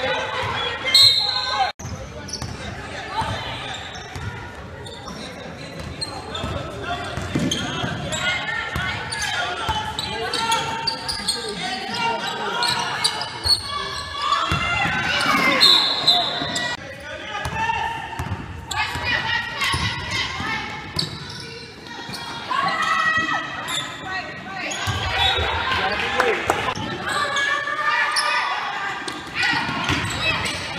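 Basketball bouncing on a hardwood gym court, with players' and spectators' voices calling out, all echoing in a large gym. Two short shrill high-pitched sounds cut through, about a second in and again around sixteen seconds.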